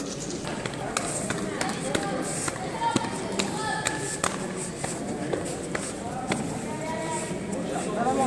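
Indistinct voices in a large, echoing gymnasium, with several short sharp slaps and knocks as two judoka grip and move on the mats.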